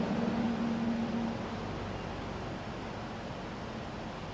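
Steady hiss of outdoor background noise, with a low steady hum that fades out about a second in.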